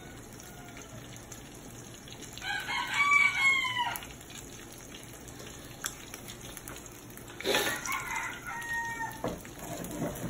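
A rooster crowing, about two and a half seconds in and again about five seconds later, each call lasting about a second and a half.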